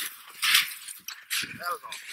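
Boots crunching on snow as a man runs and drops into a slide onto his knees, with a few irregular crunches. A short pitched vocal cry comes about three-quarters of the way in.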